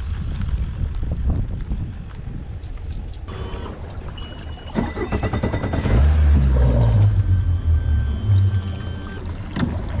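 Bass boat on its trailer being backed down a concrete launch ramp into the lake: a low rumble of the tow truck and trailer, joined by water washing around the hull as the boat enters it, loudest in the second half. Sharp knocks about five seconds in and again near the end.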